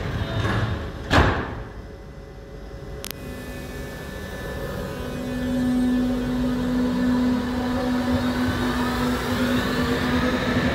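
Berlin U-Bahn train starting to pull out of a station: a loud thump about a second in and a sharp click near three seconds, then the drive's steady hum builds and a whine rises in pitch as the train accelerates.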